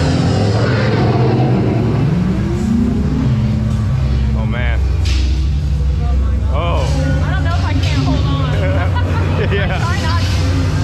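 Dinosaur ride's time rover running through the dark time-travel tunnel under the ride's effects soundtrack: a deep steady rumble, a tone rising about two seconds in, and warbling electronic sounds later on.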